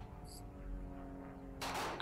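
Faint steady background hum, with a short hiss near the end.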